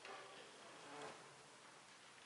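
Near silence: faint room tone, with a soft brief sound about a second in.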